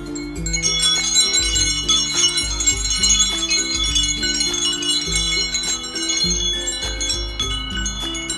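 A white cockatoo pecking and tugging at a hanging wind chime of red metal tubes, setting them clattering and ringing in a dense shimmer of overlapping high tones from about half a second in.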